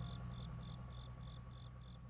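Crickets chirping in an even rhythm, about three chirps a second, over a steady low hum, slowly fading out.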